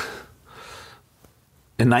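A man's breathing in the pause before he speaks: a short sharp intake at the start, then a softer audible breath about half a second in. Speech begins near the end.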